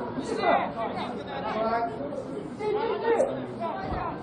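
Indistinct chatter of several voices, with no clear words.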